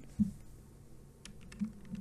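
Computer keyboard keys pressed for the Control+1 shortcut: a short run of faint key clicks a little over a second in.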